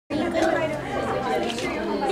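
Indistinct voices talking and chattering.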